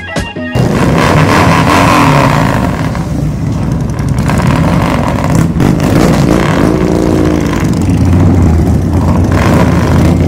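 Loud motorcycle engines running and revving, starting suddenly about half a second in, with music underneath.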